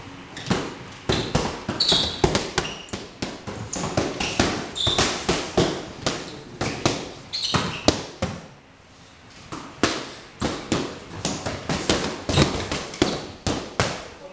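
Boxing gloves striking focus mitts in quick, irregular smacks, several pairs working at once, with a short lull about nine seconds in.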